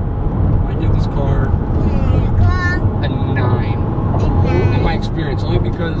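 Steady low road and engine rumble inside the cabin of a moving 2016 Mazda CX-5 Grand Touring, with voices over it.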